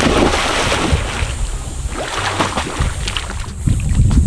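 Water splashing in a swimming pool as a child swims, loudest in the first second, with wind buffeting the microphone.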